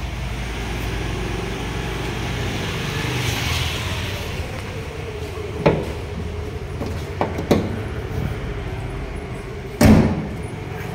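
Hyundai i20's 1.4-litre diesel engine idling steadily, with a few sharp clicks in the middle. Near the end the bonnet is shut with a loud slam.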